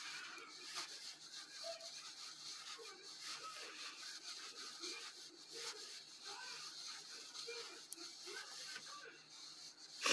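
Soft rubbing and rustling of cotton yarn being worked on a crochet hook, with faint sounds from a television in the background.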